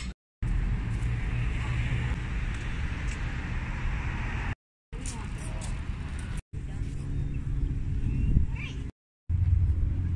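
Downtown street ambience: a steady low rumble of traffic with voices in the background, broken into short pieces by brief silences.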